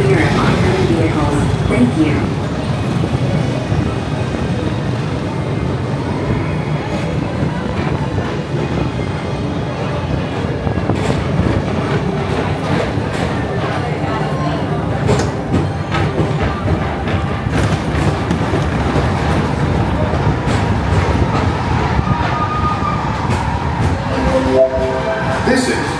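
Theme-park ambience heard from a moving PeopleMover car: crowd voices and background music over a steady low rumble, with occasional short clicks.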